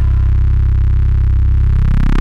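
Breakdown in an electro-pop track: the beat cuts out, leaving one loud, held low synth bass note, its upper tones starting to rise in a sweep near the end.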